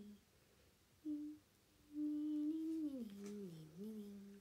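A woman humming softly with her mouth nearly closed: a short note about a second in, then a long held note that slides down in pitch and rises again near the end.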